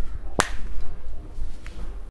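A single sharp click less than half a second in, with a much fainter tick later, over a low steady hum.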